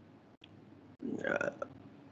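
A lecturer's voice: a pause, then a short hesitant 'uh' about a second in.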